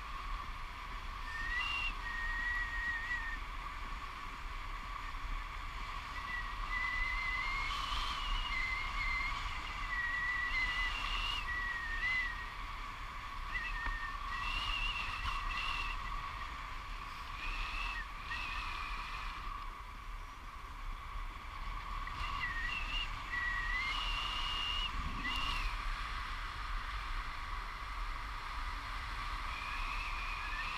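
Airflow rushing past a tandem paraglider in flight, heard as steady wind noise with low rumble, with a thin wavering whistle that comes and goes every few seconds.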